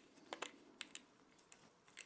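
Faint light clicks, about one every half second, as a screwdriver turns a short screw into a 3D-printed plastic side panel of a pistol crossbow.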